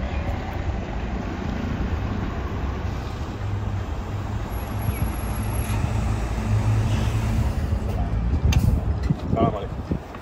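Mercedes-Benz coach's engine running with a steady low drone as the coach pulls up and stops, swelling slightly after the middle. A short sharp noise comes near the end, followed by voices.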